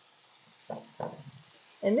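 Flour-dredged chicken frying in hot oil in a skillet, a faint steady sizzle, with two short knocks under a second apart about two-thirds of a second in.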